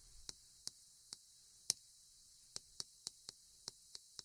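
Chalk writing on a chalkboard: about ten faint, sharp ticks at irregular spacing as the chalk strikes and lifts off the board with each stroke.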